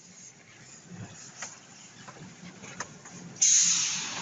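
Quiet road noise inside a moving car, with a few faint ticks. About three and a half seconds in, a sudden loud, steady hiss sets in.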